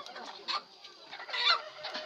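A white chicken held in hand calling twice: a short call about half a second in, then a louder, longer one about a second and a half in.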